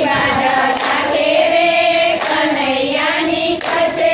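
A group of women singing a Gujarati devotional song together in unison, unaccompanied, with a few hand claps marking the beat.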